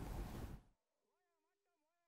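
Wind buffeting an outdoor microphone over open water, a loud rushing rumble that cuts off abruptly under a second in, leaving near silence.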